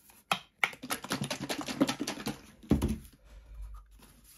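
A quick run of irregular clicks and taps, then a heavier thump about three seconds in: plastic paint cups being handled and set down on a work table.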